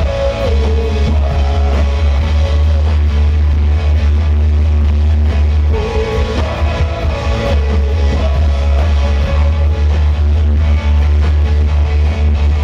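Live rock band playing with electric guitars and a drum kit, men singing over it. Sung phrases come near the start, again about six seconds in, and at the end.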